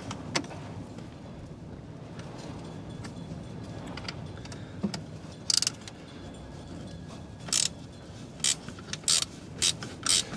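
A spanner working a battery terminal nut. From about halfway on come half a dozen short metallic clicks and rasps as the tool is worked.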